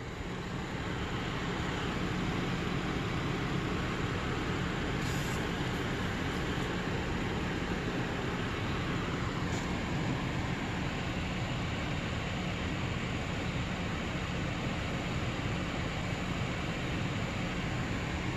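A steady low mechanical hum under an even hiss, unchanging throughout, with a faint brief hiss about five seconds in.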